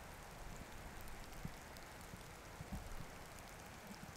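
Faint, steady hiss of light rain falling on snowy ground, with a few small ticks of drops.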